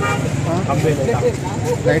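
A man talking into a microphone, with a steady low hum underneath.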